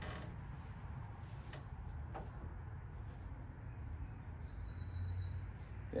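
Microfiber towel being rubbed over a car's painted hood, faint, over a steady low hum, with a few light clicks.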